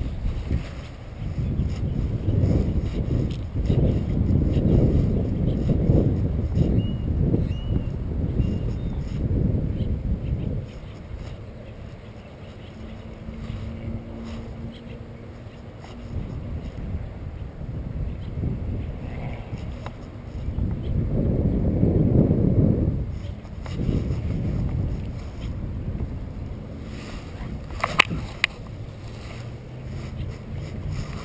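Wind buffeting the microphone in uneven gusts: a low rumble that swells for the first ten seconds or so, eases off, then swells again a little past the middle. A single sharp click comes near the end.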